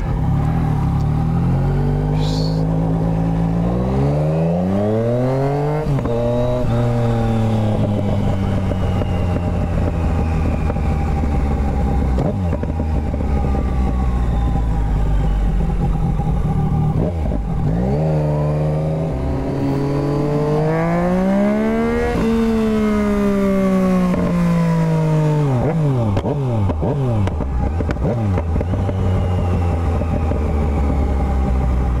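Motorcycle engine accelerating hard through the gears: the pitch climbs and drops back at each upshift, with a long pull peaking a little past the middle, then falls away as the throttle closes.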